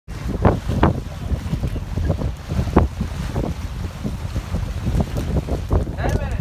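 Wind buffeting the microphone in uneven gusts aboard a schooner under sail, over the wash of the sea.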